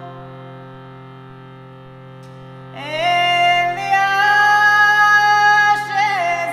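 A woman singing over a steady, sustained drone. The drone sounds alone at first, then her voice comes in about three seconds in, sliding up into long held notes.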